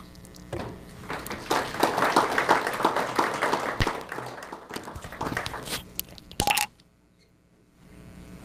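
Audience applauding, swelling about two seconds in and dying away by about six seconds. A sharp knock comes near the end, then near silence.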